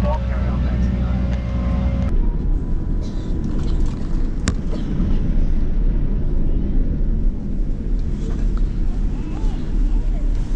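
Airliner cabin noise: about two seconds of steady hum with a few held tones, then a cut to a steady low rumble of the jet moving along the ground.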